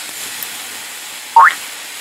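Looping frying-pan sizzle sound effect from the storybook slide, a steady hiss, with one short rising cartoon sound effect about one and a half seconds in as a clicked sausage reacts.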